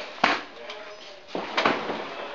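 Two short breathy vocal sounds from a person, one just after the start and one a little past the middle.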